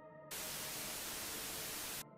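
A burst of steady white-noise static that starts a moment in and cuts off abruptly. It is a sound effect standing in for a redacted [DATA EXPUNGED] entry in the list.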